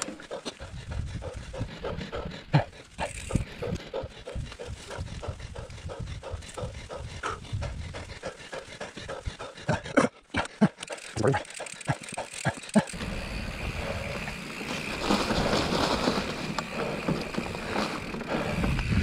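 Mountain bike rolling down a dirt forest trail: tyre noise on dirt and roots, with frequent clattering knocks from the bike and camera mount over bumps, and the rider breathing hard. About two-thirds of the way through, a steadier rushing noise grows louder.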